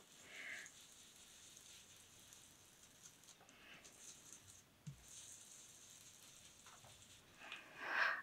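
Near silence, with faint soft rubbing of a foam ink dauber worked lightly over paper.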